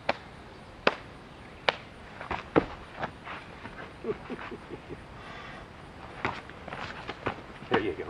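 Sharp slaps of hands against arms and bodies during close-range sparring: about ten single smacks at uneven intervals, with a short laugh about halfway through.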